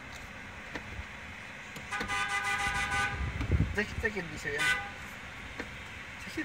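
A car horn sounds once, held for about a second, starting about two seconds in, over the hum of the car driving. Brief voices follow just after it.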